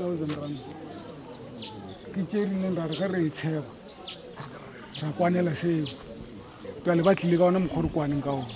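Men's voices talking in phrases, words the recogniser did not catch, with short high bird chirps over them.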